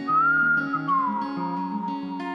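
A man whistling a melody over fingerpicked acoustic guitar: a pure whistled note rises slightly, slides down about a second in and is held, while the guitar notes keep ringing underneath.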